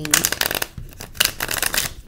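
A deck of cards being shuffled by hand, in two quick runs of rapid papery flicking with a short pause between.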